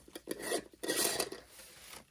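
Metal screw lid being twisted off a small glass mason-jar hummingbird feeder: an irregular scraping, grinding rub of the lid on the glass, loudest about a second in.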